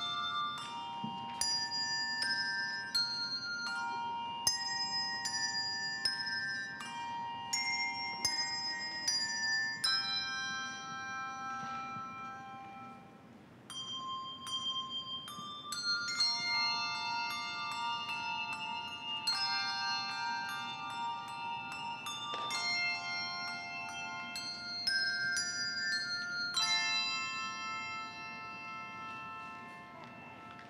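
Handbell choir ringing a piece in chords, each struck bell tone ringing on. There is a short quieter lull about twelve seconds in, and the last chord dies away near the end.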